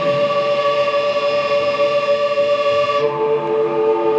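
Live goth/post-punk band holding a sustained droning chord with no drums. The chord shifts to new notes about three seconds in.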